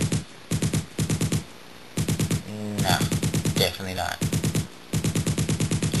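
.50-calibre heavy machine gun firing long automatic bursts at about ten rounds a second. The bursts are broken by short pauses: a brief one just after the start, a half-second gap about a second and a half in, and another just before the end.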